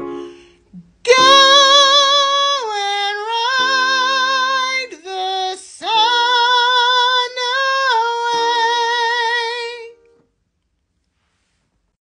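A woman singing a high phrase in a thinned-out, whinier tone with the vowels kept close to 'uh': a lighter placement meant to stop the voice pushing and carrying too much weight up high. Two sung phrases with a quick breath between them about halfway through.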